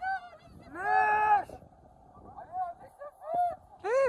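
Men shouting several drawn-out, arching calls, the longest about a second in and more near the end, as cheers after an RC car's run up a sand dune.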